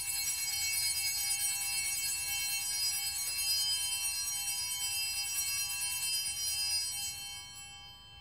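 Altar bells ringing continuously in a bright, shimmering peal for about seven seconds, then dying away near the end. They mark the elevation of the chalice just after the consecration at Mass.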